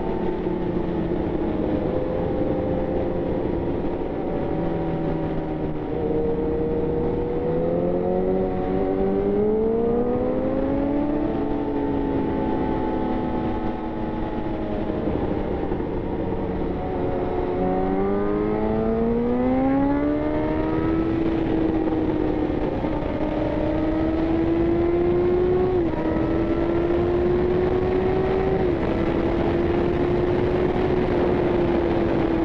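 Yamaha FZ1's inline-four engine heard from the rider's seat over wind rush, revving up twice with its pitch climbing, then holding a steady cruise with two sudden small drops in pitch near the end, typical of upshifts.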